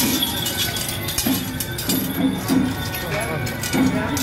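Metal chains and fittings on a carried procession pole clinking and jangling irregularly, over music and voices.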